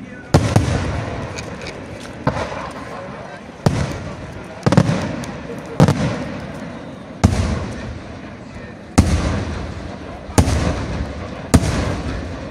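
Aerial firework shells bursting one after another, about ten sharp bangs spaced roughly a second apart, each followed by a rolling rumble that dies away.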